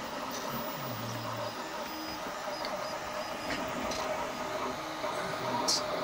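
A homebuilt Makeblock 3D printer running a print: its stepper motors whine in short held tones that jump from pitch to pitch as the print head moves, over a steady hum.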